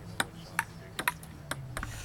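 Table tennis rally: the ball clicking off the paddles and the table, about six sharp hits a few tenths of a second apart.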